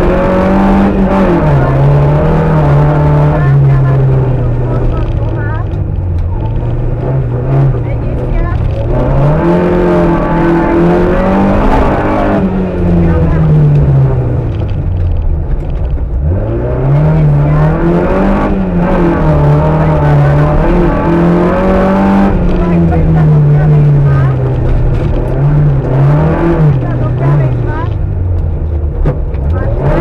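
Škoda 105 R rally car's engine, heard from inside the cabin, revving hard and dropping again and again as the car accelerates, shifts and brakes through a slalom course; the pitch climbs and falls many times, with two deep drops, one midway and one near the end.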